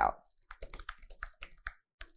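Typing on a computer keyboard: a quick run of about ten light key clicks lasting just over a second.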